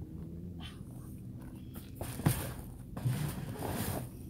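Plastic storage tote being lifted onto a metal hitch-mounted cargo carrier: a sharp knock about two seconds in as it lands, then scraping and rustling as it is pushed into place on the rack.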